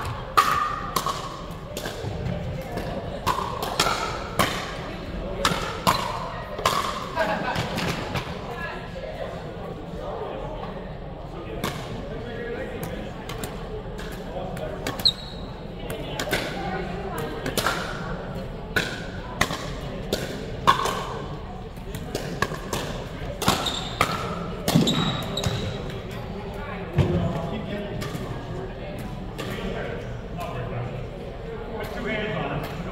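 Pickleball paddles striking a hard plastic ball: sharp pops at irregular intervals, some in quick rallies and some farther apart, echoing in a large gym hall, over a steady murmur of voices.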